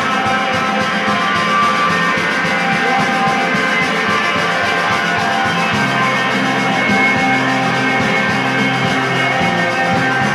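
A rock band playing live, with guitars ringing in long sustained chords over bass. About six seconds in, a new, stronger held bass note comes in.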